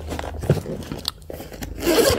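Zip on a fabric travel bag being pulled open, a quiet rasp with small clicks and the rustle of the bag's fabric being handled.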